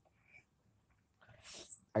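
A pause in a person's speech: near quiet, then a short, soft intake of breath in the last second before talking resumes.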